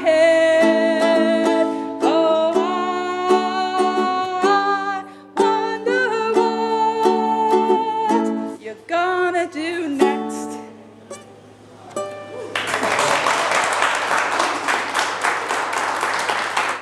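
A woman singing the closing line of a song to her own strummed ukulele, the last chords dying away about ten to twelve seconds in. Then applause starts and carries on to the end.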